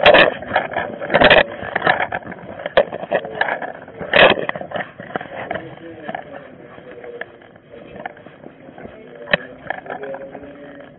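A body-worn camera's microphone picking up knocks and rubbing as the wearer moves, with a few sharp knocks in the first half (about a second in and again around four seconds) and faint indistinct voices underneath.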